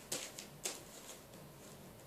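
Faint rustling and clicking of trading cards being handled, a few short sounds in the first second.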